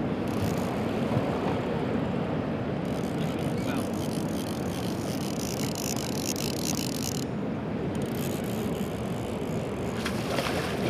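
Fishing reel being cranked steadily to wind in a hooked Chinook salmon, over a steady rush of wind and sea around the boat.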